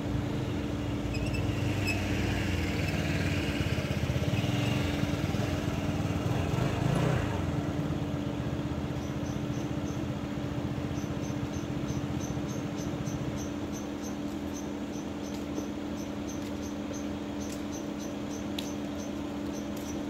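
A motor scooter rides up and idles, its engine loudest a few seconds in and easing off later. A steady low hum runs underneath, and from about halfway a regular high chirping of crickets sets in, a few chirps a second.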